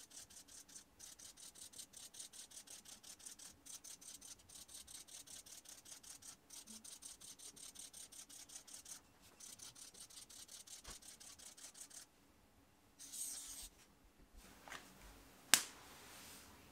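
Felt-tip marker drawing quick little strokes on a gridded pad, faint and rapid at about five strokes a second as it traces rows of tiny squares. After a short pause there is a longer stroke, then a single sharp click near the end.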